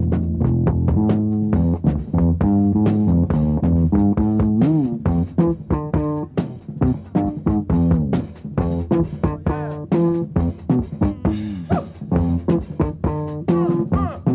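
Live funk instrumental: an electric guitar solos in quick picked notes with several string bends, over electric bass and drum kit.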